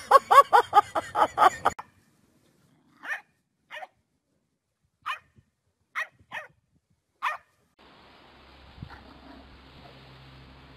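A dog barking in a quick run of about eight high, yappy barks over the first two seconds. Then six short high calls follow, spaced about a second apart.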